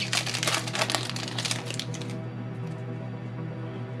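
Foil wrapper of a Yu-Gi-Oh! booster pack crinkling and tearing as it is pulled open, in quick crackles that stop about halfway through. Steady background music runs underneath.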